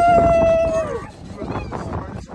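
A person's voice holding one long high note for about a second, then dropping away, with weaker voice sounds after.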